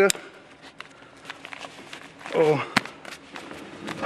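Light clicks and rustling of a child car seat's harness being buckled around a child dummy, with one sharper click a little before the end.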